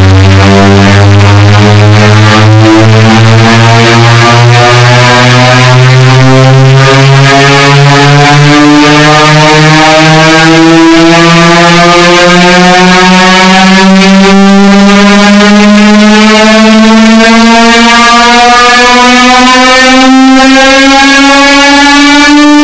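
Loud, distorted electric guitar tone held on and gliding slowly and steadily upward in pitch, rising about an octave and a half.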